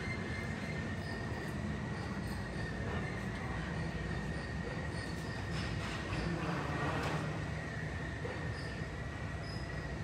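Jet aircraft noise on the airport apron, heard through the terminal window glass: a steady high-pitched whine over a low rumble, swelling a little about halfway through.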